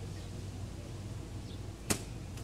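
A single sharp knock near the end, over a steady low hum.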